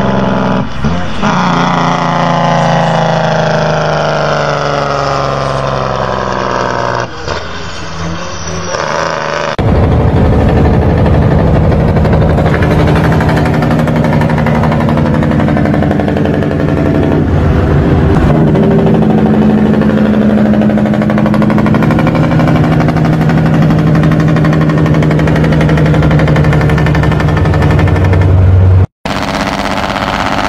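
Heavy diesel truck engine brakes (Jake brakes) played one after another for comparison. The first runs with a pitch falling as the engine winds down; about ten seconds in a steadier, deeper engine-brake sound takes over, and it cuts off suddenly near the end.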